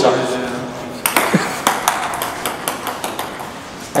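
Table tennis ball clicking off the table and paddles in a series of sharp, irregularly spaced hits. The ball is slightly cracked, so it bounces badly.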